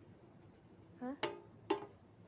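A woman's short spoken "Ha?" with two sharp clicks among the syllables, over a faint steady background.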